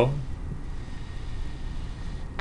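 Pencil drawing a long stroke on paper, faint against a steady low background rumble.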